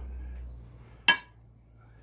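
A single sharp clink about a second in, with a brief ring, as a serving ladle knocks against the dish while curry is ladled out of a stainless steel pot. A low rumble fades out in the first half second.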